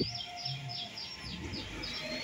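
A bird calling in a steady run of short, high, down-slurred chirps, about four a second.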